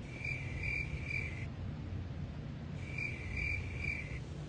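Crickets chirping, the comic 'crickets' sound effect for an awkward silence: two identical runs of high chirps, the second starting a little before the last second, over a faint low hum.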